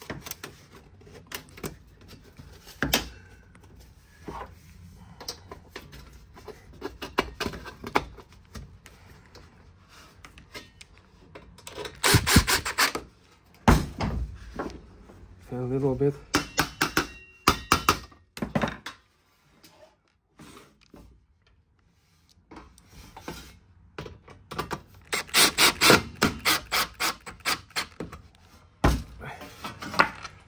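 A hammer striking galvanized sheet-steel duct, driving two swaged pipe segments together at their beaded joint. Scattered knocks and handling clatter give way near the end to a run of quick blows, about two or three a second.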